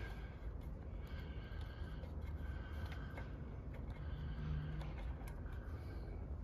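Faint ticks and scrapes of a white plastic oil fill cap with dipstick being worked loose by hand from a small engine's crankcase, over a low steady rumble.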